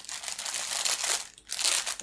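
Clear plastic mailer bag crinkling as it is handled while a thermal-label eraser roller is pressed over its shipping label, in two stretches with a short break about a second and a half in.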